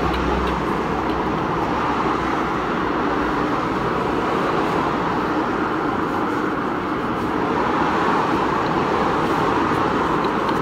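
Steady, even rushing background noise that holds at one level throughout, with a few faint small clicks.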